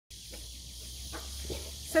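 Woodland ambience: a steady high hiss of insects over a low, even rumble, with a woman starting to speak right at the end.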